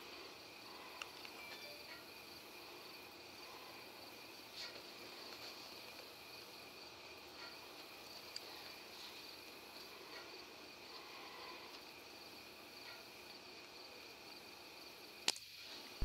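Crickets chirring steadily in the night, with a few faint ticks. Near the end comes one sharp report from an EDgun Leshiy PCP air rifle firing.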